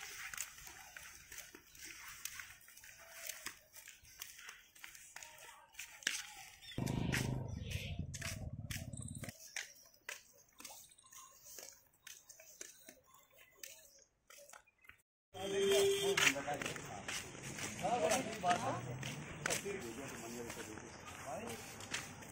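Indistinct voices and outdoor background sound in short cut-together clips, with a stretch of low rumbling noise about seven to nine seconds in and near quiet between about nine and fifteen seconds.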